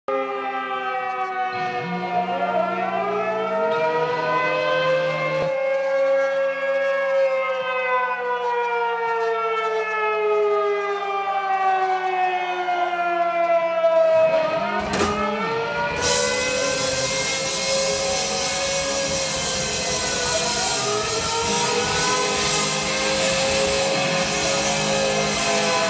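A wailing, siren-like sound played loud through a concert PA, several tones slowly sliding up and down in overlapping swells. About two-thirds of the way in, a dense hiss joins it.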